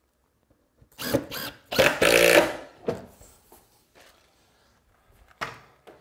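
A small handheld power tool run in a few short bursts about a second in, the longest lasting under a second. A couple of brief knocks follow near the end.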